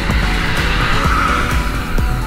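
Background music with a steady beat, over a car passing on a wet road, its tyre hiss swelling about a second in.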